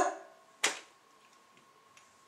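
A man's single short, sharp exhale through the nose, a scoffing snort, about half a second in. After it there is near quiet with a faint steady thin tone.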